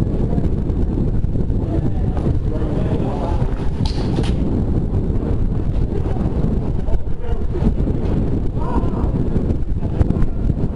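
Wind buffeting a body-worn camera's microphone, a steady low rumble, with faint voices in the background.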